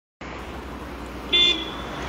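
A car horn gives one short toot about a second and a half in, over steady road traffic noise.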